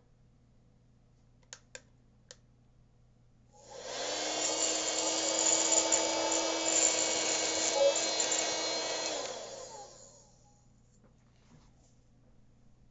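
Small vacuum cleaner switched on for about six seconds, its motor running with a steady whine as it sucks loose ballast stones off wooden model railway track, then winding down. A few small clicks come before it starts.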